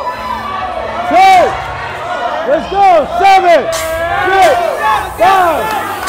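Spectators yelling encouragement to a lifter: a run of short, loud shouts that rise and fall in pitch, some voices overlapping, over the hubbub of a packed gym.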